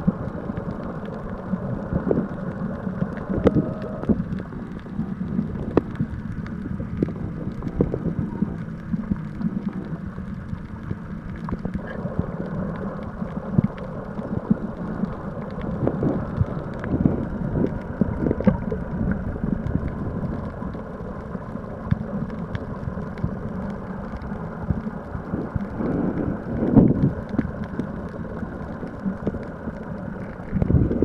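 Muffled underwater sound of sea water against a submerged camera housing: a steady low rumble with many small clicks and knocks, a few louder ones in the middle and near the end.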